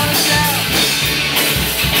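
Live rock band playing: a Tama drum kit keeping a steady beat under electric guitar and bass guitar.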